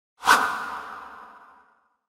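A single whoosh sound effect for a logo reveal: a sudden swoosh about a quarter second in, leaving a ringing tone that fades out over about a second and a half.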